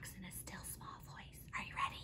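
A woman whispering a few words, faintly.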